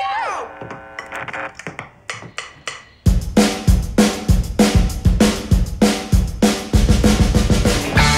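A rock drum kit starts with a few light hits, then crashes in loudly about three seconds in with a steady pounding beat, about three strokes a second, over low pitched notes from the band.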